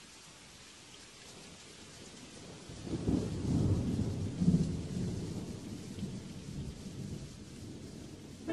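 A low rolling rumble of thunder builds about three seconds in, is strongest for a couple of seconds, then slowly fades, over a faint steady hiss of rain.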